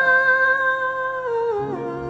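Music from a slow ballad: one long held note over soft sustained accompaniment. The note steps down in pitch about a second and a half in and begins to fade.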